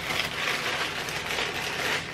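Parchment paper rustling and crinkling as it is gripped and lifted to roll up a filled sponge cake, a steady crackly rustle.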